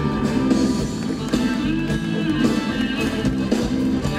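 Live band with drums, bass, electric guitar and keyboard playing a dance number, an instrumental stretch without singing.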